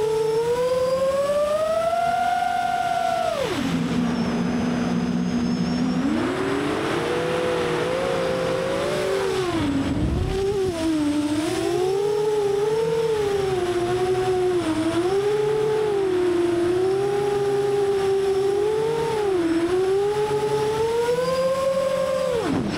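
FPV quadcopter's brushless motors and propellers whining, the pitch rising and falling constantly with the throttle. The pitch drops sharply about three and a half seconds in and climbs back about two seconds later.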